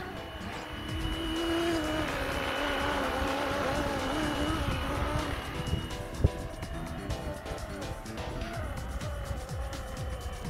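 Two-bladed RC scale helicopter (Flywing Bell 206 electronics) in flight: a steady rotor-and-motor whine whose pitch wavers up and down as it is flown. Wind buffets the microphone throughout, with a sharp thump about six seconds in.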